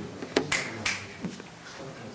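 A few short, sharp clicks, about four spread over two seconds, one of them trailing a brief high hiss.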